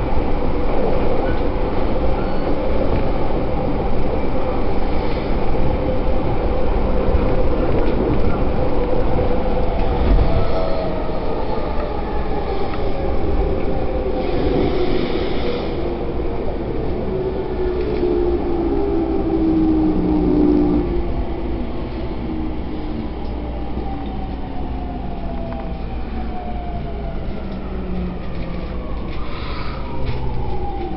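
Electric commuter train heard from inside the passenger car: a steady rumble of the running train with several motor whines that slowly fall in pitch, the sound easing off a little over time.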